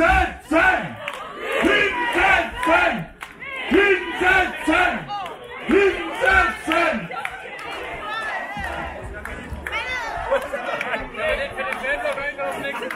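A man bellowing a fan chant into a handheld microphone in loud, rhythmic shouted phrases, with a crowd around him. From about eight seconds in the chanting gives way to crowd noise and scattered voices.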